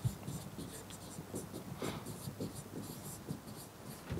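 Pen writing on an interactive whiteboard's screen: faint short taps and scratches as each letter is drawn.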